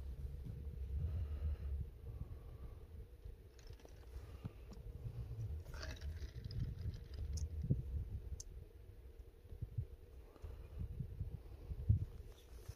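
Low, uneven rumble with scattered clicks: wind buffeting the microphone and camera handling noise, with no donkey calls heard.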